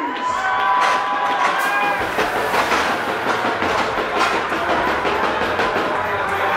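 Crowd hubbub from a seated audience, with music mixed in.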